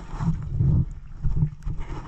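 Water sloshing and gurgling around a camera held at the waterline, with low rumbling surges as the water washes over it.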